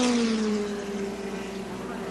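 Group C sports-prototype race car engine running at speed: one steady engine note that drops in pitch over the first second, then holds.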